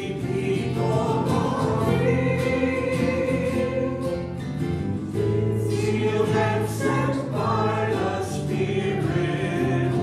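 A hymn sung with instrumental accompaniment, in long held notes.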